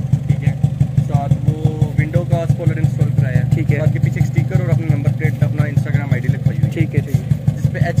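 Toyota Corolla E140 engine idling steadily through an aftermarket HKS exhaust, a deep low drone with an even pulse several times a second, with voices talking over it.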